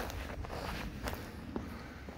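Soft footsteps on an asphalt path, a few steps roughly half a second apart, over a low steady rumble.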